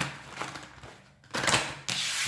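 A deck of tarot cards being shuffled by hand: a sharp tap as the deck is handled, then a rapid riffling clatter of cards about a second and a half in.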